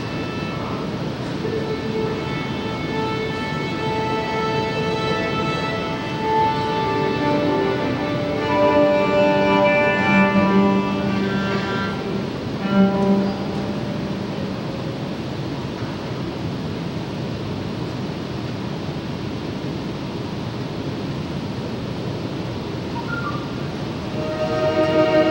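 Live big band playing long held chords that swell and then die away about halfway through. After that only a steady rushing background noise remains.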